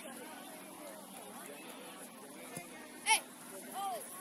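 Distant chatter and calls from players and sideline spectators at an outdoor youth soccer game, with one short, loud shout about three seconds in.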